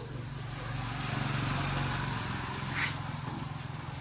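A motor vehicle's engine running, growing louder about a second in and easing off again, with a brief higher-pitched sound near the three-second mark.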